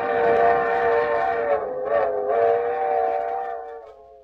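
Steam train whistle sound effect: one long, chord-like blast that sags briefly in pitch about halfway through and fades away at the end.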